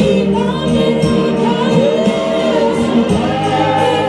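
Gospel worship song: several voices singing over instrumental backing with a steady beat.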